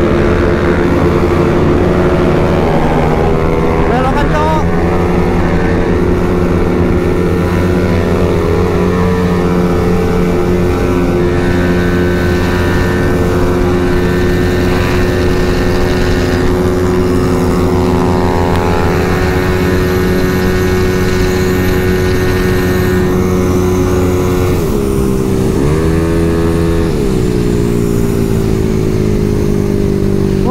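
Honda Vario scooter engine running at high speed with a steady drone. About 25 seconds in the note drops and then climbs back as the throttle is eased and opened again.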